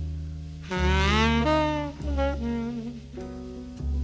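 Jazz recording: a saxophone plays a slow melody that bends up and then down in pitch about a second in, over sustained low bass notes.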